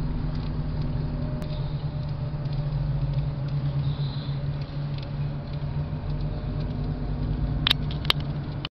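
A motor running steadily with a low hum, with a few faint clicks.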